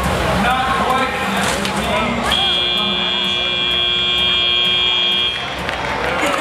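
End-of-match buzzer at a FIRST Robotics Competition match: one steady electronic tone starting a little over two seconds in and held for about three seconds before cutting off, over the voices and noise of the arena crowd.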